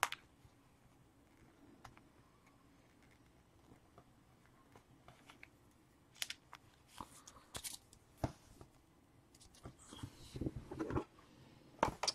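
Faint, scattered rustles and clicks of trading cards and their plastic sleeves and packaging being handled, busier in the second half.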